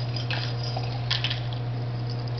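Liqueur being handled and poured from a bottle at a bar counter: a few soft clinks and small liquid sounds over a steady low hum.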